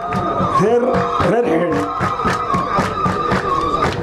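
A crowd singing with one long, wavering held note over rhythmic hand clapping, about four claps a second.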